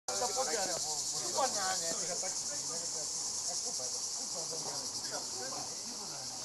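A steady, high-pitched chorus of cicadas, with indistinct voices of people talking underneath, most clearly in the first two seconds.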